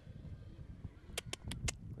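A horse galloping on a cross-country course: a low outdoor rumble, then four quick sharp hoof strikes a little past the middle.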